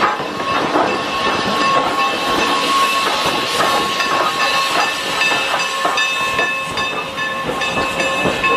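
Norfolk & Western 4-8-0 steam locomotive No. 475 moving slowly in reverse, with a steady hiss of steam and irregular clanks and clicks from its running gear and wheels on the rails.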